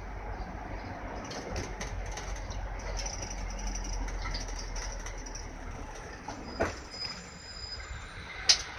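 Isuzu Erga Mio (PDG-LV234N2) city bus running, heard from on board: a steady low engine and road drone with faint rattles, and a short knock about six and a half seconds in.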